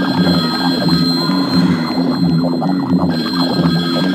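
Dark psytrance track at 176 BPM in a filtered passage. The top end is swept away and the rolling bassline pulses on alone. The treble partly comes back in the last second.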